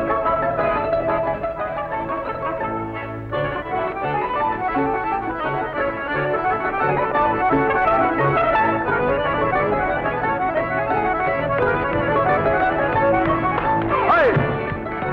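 A small band playing an instrumental tune with a repeating bass line under the melody.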